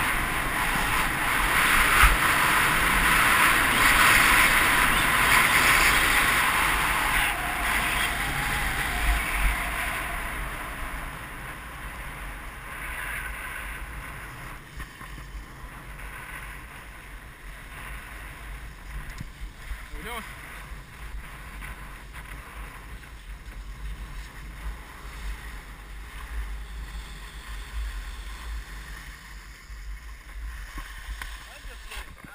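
Wind rushing over the microphone and skis hissing and scraping on packed snow as a skier runs downhill. It is loud for the first ten seconds, then fades as the skier slows to a glide.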